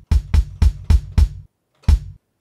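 Kick drum sample sliced from a breakbeat loop, played from a pad in Studio One's Impact drum instrument. It is triggered about four times a second, then after a short pause once more near the end: deep hits with a click on top, their highs being trimmed by a low-pass filter.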